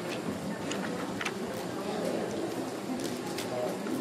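Low murmur of many people in a large hall, with a few sharp cracks of matzah being snapped in half at the tables.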